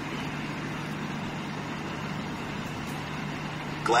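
Steady background hum and hiss with a constant low tone, unchanging throughout, until a synthesized voice begins right at the end.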